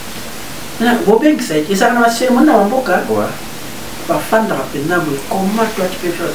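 Speech only: a man talking in French, over a steady background hiss.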